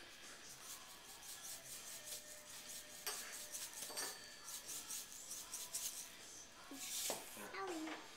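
Table knife spreading icing across a sugar cookie: faint, repeated scraping and rubbing strokes, with a brief louder scrape about seven seconds in.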